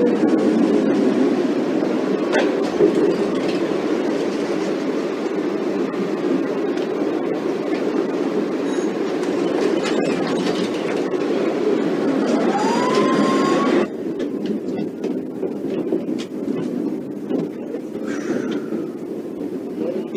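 Tram running on its rails, a steady rumble heard from inside the car, with a brief rising squeal shortly before the noise drops off abruptly about two-thirds of the way through; after that, a quieter stretch with scattered clicks.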